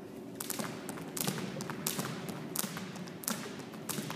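Two jump ropes slapping a wooden gym floor as two jumpers skip side by side, starting about half a second in and going on in a steady rhythm, the light slaps often coming in close pairs about two-thirds of a second apart.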